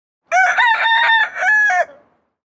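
A rooster crowing once, a full cock-a-doodle-doo lasting about a second and a half, its last note falling off at the end.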